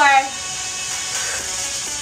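Steady background music, with the tail of a spoken word at the very start.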